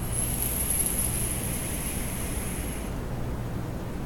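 Electronic cigarette (vape mod) fired during a long draw: a soft hiss of air and coil with a thin, high steady whine for about three seconds, then it stops.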